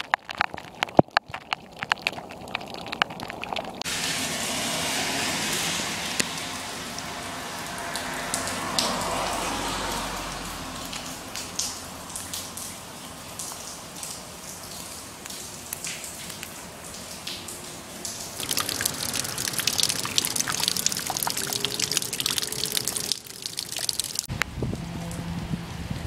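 Rain falling and rainwater running. For the first few seconds, sharp drops strike close by. Then a steady rush of water follows, growing louder with dense drop impacts near the end.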